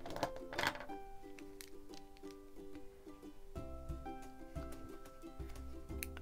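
Light background music of plucked-string notes, with a few small clicks and handling noises under it.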